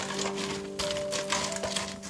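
Soft background music with long held notes, over a run of light, irregular clicks and knocks.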